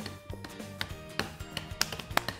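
Background music under a series of irregular sharp knocks: a wooden rolling pin bashing salted peanuts in a plastic bag on the countertop to crush them.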